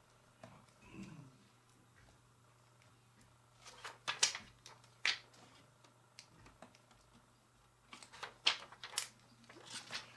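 Small plastic rhinestone stickers being picked up and pressed onto a card sticker picture by hand: scattered light clicks and taps, a few sharp ones about four to five seconds in and again around eight to nine seconds, over a faint steady hum.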